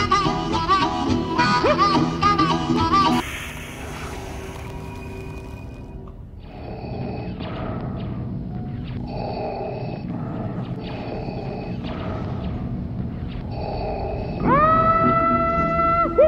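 Blues harmonica: wailing bent notes, then a breathy hiss without notes, a softer passage of repeated rhythmic chugs, and near the end a loud note bent upward and held.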